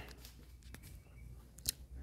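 Quiet pause with a faint steady low hum and a single sharp click about three quarters of the way through, with a fainter tick just before the middle.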